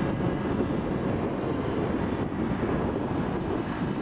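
Drone of a radio-controlled model autogyro's motor and propeller flying overhead, under a gusty low rumble of strong wind on the microphone.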